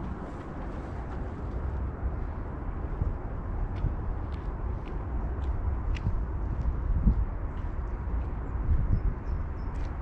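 Wind buffeting the microphone in a steady low rumble, with light footsteps on wet stone paving ticking about twice a second from partway through.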